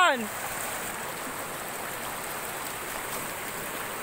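Shallow river running fast over rocks, a steady rushing of water, after a brief shout right at the start.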